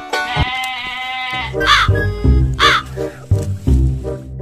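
Edited-in comedy background music: a held chord for about the first second, then a pulsing bass beat, with two short swooping cartoon-style sound effects near the middle.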